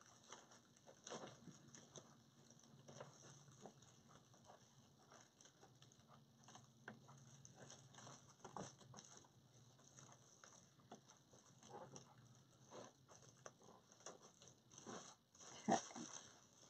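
Near silence, with faint scattered ticks and rustles from hands working deco mesh and pipe cleaners on a wreath form.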